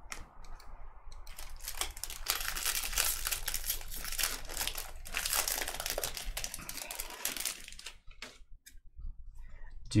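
Foil wrapper of a trading card pack being torn open and crinkled by hand, a dense crackling that lasts about six seconds, then a few faint ticks near the end.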